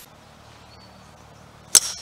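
A golf club striking the ball in a full swing: one sharp crack near the end, with a short high ringing tail, over faint steady background.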